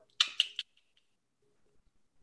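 A few brief sharp clicks in the first half second, then near silence.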